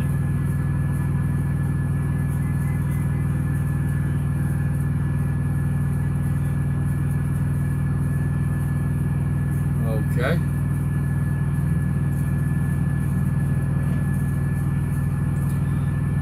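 Steady low drone of an idling diesel truck engine heard inside the cab, with one short voice-like sound about ten seconds in.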